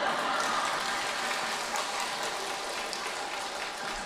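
An audience clapping: a dense patter of many hands that slowly dies away.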